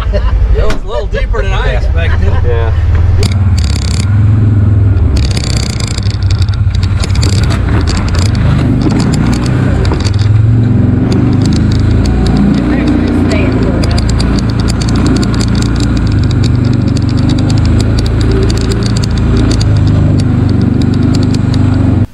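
Side-by-side UTV engine running steadily at low speed while driving through tall grass. A few knocks and rattles come in the first several seconds. A man speaks briefly at the very start.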